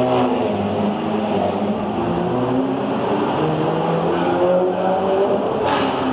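Ferrari F430 4.3-litre V8 engines running and being revved lightly. Their pitch rises and falls, with more than one engine note overlapping.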